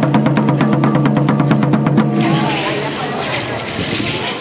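Aztec ceremonial drumming on a huehuetl, the tall wooden upright drum, beaten in a fast even roll that stops abruptly about halfway through. After it, a hiss of crowd voices and rattling.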